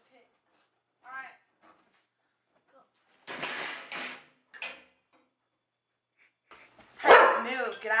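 A large black dog giving a short, high whine about a second in, then two rough barks around three and a half and four and a half seconds in.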